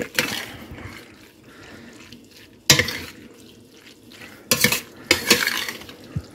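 A spoon stirring egg noodles in cream sauce in a stainless steel stockpot: soft wet stirring, with a few sharp knocks of the spoon against the pot, one about halfway through and two near the end.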